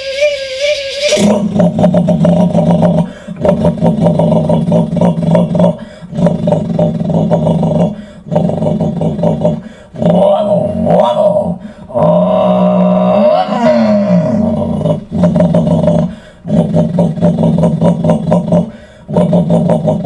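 A man's mouth imitation of a 1968 Chevrolet V8 with Pro Comp cam, Hooker headers and a Holley four-barrel carburetor, voiced into stacked plastic buckets. It revs in a run of pulls of two to three seconds each, broken by short gaps, going through the gears, with one pull rising and falling in pitch about twelve seconds in.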